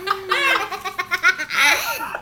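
A small child giggling in quick bursts of laughter, rising to a higher, longer laugh near the end.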